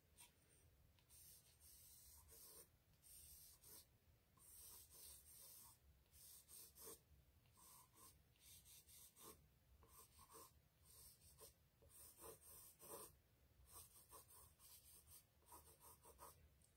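Faint scratching of a pencil drawing short, irregular strokes on thick paper, sketching tree branches.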